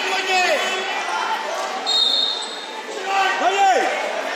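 Wrestling shoes squeaking on the vinyl mat as the two wrestlers move on their feet: a few short, rising-and-falling squeaks at the start and another group about three seconds in, echoing in a large hall.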